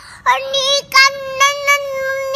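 A toddler girl singing unaccompanied, holding long steady notes.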